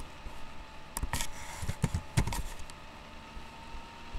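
A cluster of clicks and light knocks from objects being handled, with a brief rustle about a second in.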